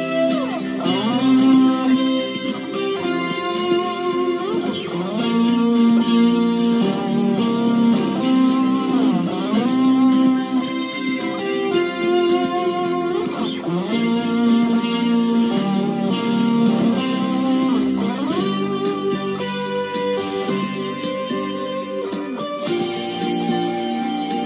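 Fender Stratocaster electric guitar playing a melodic lead with frequent bent and sliding notes, over a backing track with a steady beat.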